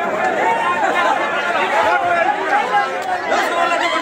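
A crowd of men talking and calling out over one another, many voices at once and loud throughout.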